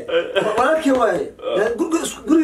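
Men's voices, talking through laughter.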